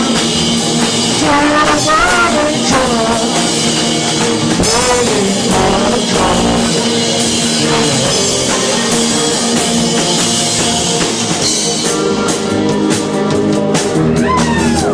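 Rock band playing electric guitar and drum kit, with a sung vocal line in the first half. Drum hits come to the fore near the end.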